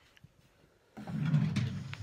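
A drawer of a chest of drawers slid along its runners by hand, one low sliding sound about a second long that starts about a second in.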